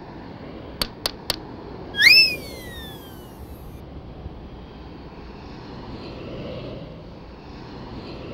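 A conductor's baton tapped three times in quick succession on the music stand, then a loud whistle that jumps up and glides down over about a second and a half, over a low steady city hum.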